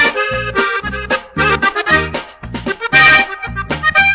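Instrumental passage of a norteño corrido: a button accordion plays the melody over a steady, even bass beat, with no singing.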